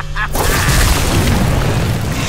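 Explosion sound effect in an animated battle: a sudden booming blast about a third of a second in, followed by a dense rushing noise with a deep rumble that holds through the rest.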